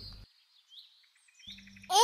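Faint bird chirps: a few short, high calls over a quiet forest-ambience background.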